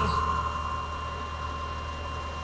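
A machine running steadily: a high, even whine over a low hum.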